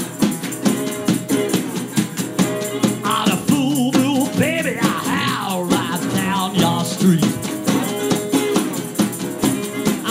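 Blues played live on a metal-bodied resonator guitar, with notes that glide up and down in the middle of the passage, over a steady snare drum beat and other hand percussion.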